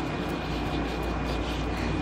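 Steady background noise: a low hum under an even hiss, with a faint high whine held throughout.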